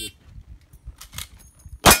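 Rifle shot from a cowboy-action lever-action rifle near the end, followed at once by a steel target ringing from the hit. Before it, only faint handling noise.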